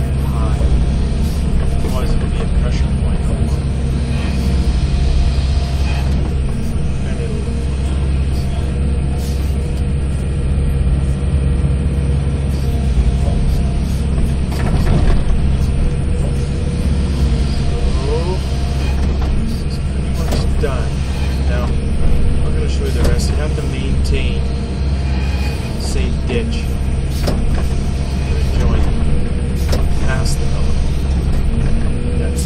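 Hydraulic excavator's diesel engine running steadily, heard from inside the cab, with scattered knocks and rattles as the machine digs and dumps soil.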